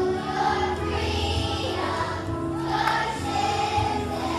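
A choir of young children singing a song in unison over an instrumental accompaniment with steady low bass notes.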